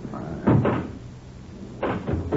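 Pinball machine sound effect in a radio drama: a quick pair of knocking clacks about half a second in, and another clack near the end, over a low hum.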